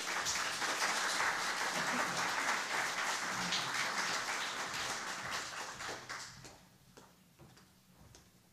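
A small audience applauding, a steady spatter of hand claps that dies away about six to seven seconds in, leaving a few faint taps.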